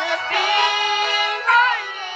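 A song from a cartoon musical number: a high singing voice holds one long note, then sings a short rising-and-falling phrase near the end.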